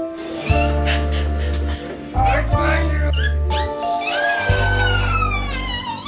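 Background music: a song with sustained bass notes and a high voice, which slides downward in a long falling note in the second half.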